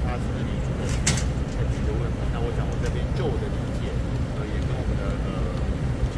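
Steady low rumble of a motor vehicle engine running close by, with faint, indistinct voices in the background and one sharp click about a second in.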